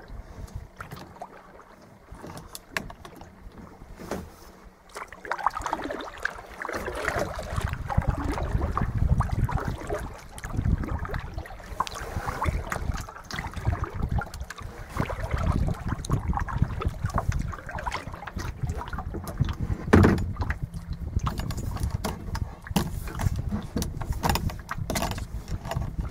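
Small waves lapping and gurgling against a kayak hull with gusty wind rumbling on the microphone. It is fairly light at first and grows stronger from about six seconds in. Scattered short knocks run through it, the loudest about twenty seconds in.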